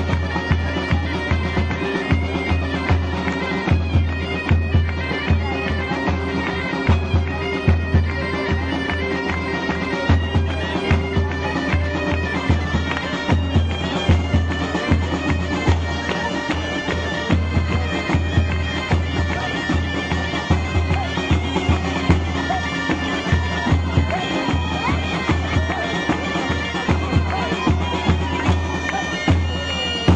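Bagpipe playing a folk tune over its steady drone, with a drum beaten in a regular rhythm underneath.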